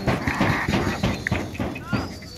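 Pigeons flushed off the ground, their wings clattering in a quick run of claps and flutters as the flock takes to the air, with men's voices shouting over it.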